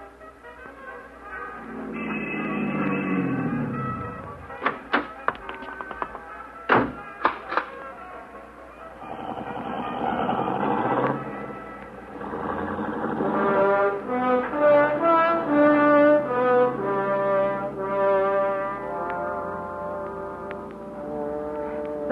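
Radio-drama band music with brass: a low falling figure, a few sharp knocks about five to eight seconds in, a swell, then a melodic band passage that leads into a song.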